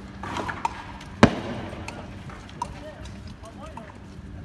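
A single loud gunshot about a second in, sharp and with a short echo after it, amid people shouting in the street.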